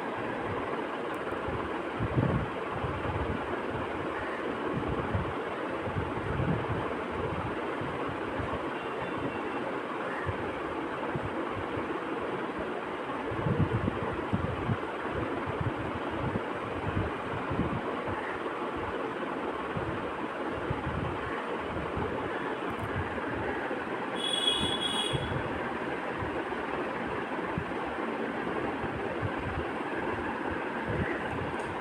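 Potato wedges deep-frying in hot oil in an aluminium kadai: a steady sizzle with fine crackling and a few louder knocks. A brief high-pitched pulsing sound comes about three quarters of the way through.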